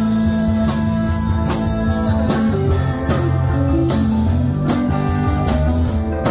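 Live rock band playing an instrumental passage: electric guitar and keyboard over a steady drum-kit beat, with long held notes.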